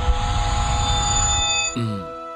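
Cartoon sound effects over background music: a sustained whoosh with steady high ringing tones, ending in a quick falling pitch glide near the end.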